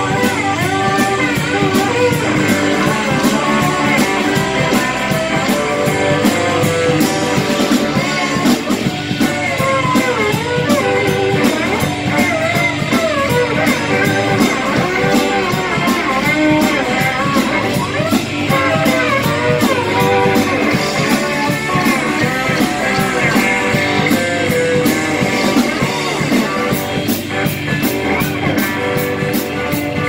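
Live band playing a blues-rock song on electric and acoustic guitars, electric bass and drum kit, loud and steady throughout.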